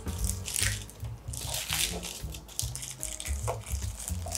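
Aluminium foil crinkling in irregular bursts as it is folded up and pinched around a steel ring mould, over background music.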